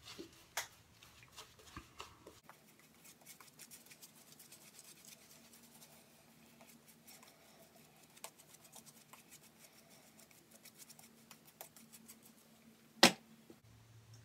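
Synthetic shaving brush swirling wet lather over stubble, a faint, fine crackling of bristles and foam against the skin. A single sharp knock sounds about a second before the end.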